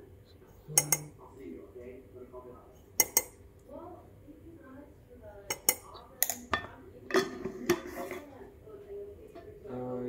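A metal spoon clinking against a mug and a sugar canister as sugar is spooned in: sharp clinks, about nine of them, scattered irregularly, several close together in the second half.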